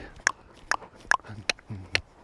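A horse trotting under saddle: sharp, regular clicks about twice a second, with a couple of soft low thuds, in time with its stride.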